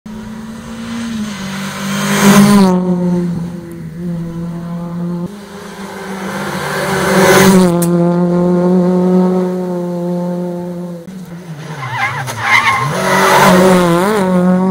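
Rally car engine passing at speed close by twice, its pitch dropping sharply as it goes past each time. Near the end it comes by again with the engine revving up and down through gear changes.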